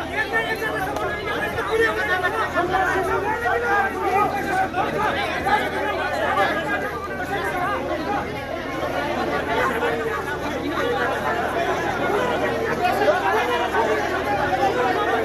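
A crowd of men in a heated argument, many voices talking and shouting over one another without a break.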